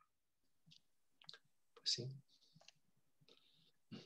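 Mostly quiet video-call audio with a few short, faint clicks scattered through it, and a brief quiet spoken "sí" about two seconds in.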